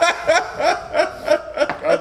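People laughing: a run of short, rhythmic chuckles, about three a second.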